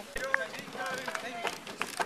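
Faint background chatter of onlookers' voices, with a few knocks and clicks from the camera being handled as it swings round.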